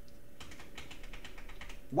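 Computer keyboard keystrokes: a quick run of light key taps, about ten a second, starting about half a second in and lasting about a second and a half.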